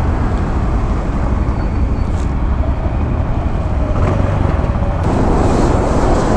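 Road traffic passing close by over the low, steady running of an idling Honda Beat single-cylinder scooter; a truck passing near the end makes it louder from about five seconds in.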